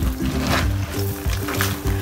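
Background music with held bass notes, over a couple of brief scrapes of a spatula stirring crabs in a metal pan.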